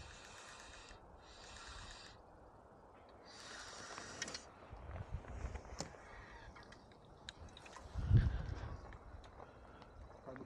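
Spinning reel cranked in three short whirring spurts as line is wound in, then a single low thump about eight seconds in.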